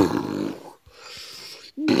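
A person's voice making a growling monster noise, loud and sudden at the start and fading within about a second. Another voiced sound begins near the end.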